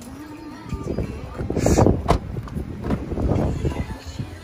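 Gusty wind rumbling on the phone's microphone, swelling loudest just under two seconds in, with a brief knock just after.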